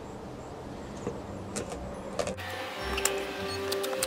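A few light knife taps on a wooden cutting board as pumpkin is diced. A little over halfway through, soft background music with held notes comes in, and the taps carry on under it.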